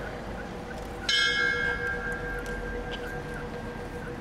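A bell struck once about a second in, ringing with a bright, high tone and fading over about two seconds: a toll sounded after a victim's name is read aloud.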